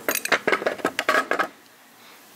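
Metal parts of a degreaser-foamed two-stroke scooter engine clinking and knocking as they are lifted and handled on concrete. It is a quick run of sharp clinks that stops about a second and a half in.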